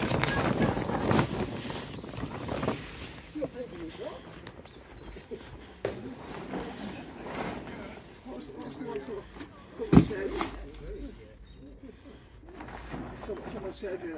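Plastic tarpaulin rustling as it is pulled and handled over a gazebo frame, loudest in the first few seconds. There is one sharp knock about ten seconds in.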